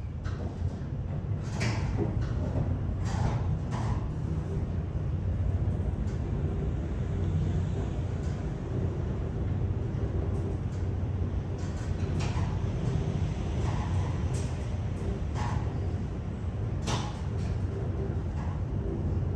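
Inside a ThyssenKrupp high-speed traction elevator cab travelling down at speed: a steady low rumble of ride and air noise, with a few brief clicks and rattles from the cab.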